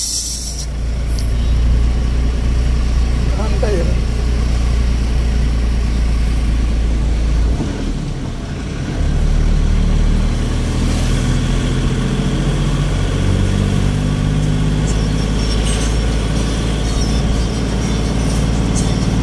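Vehicle engine and road noise heard from inside the driver's cab while driving, a steady low drone that dips around eight seconds in, as at a gear change, then picks up again with the engine note shifting.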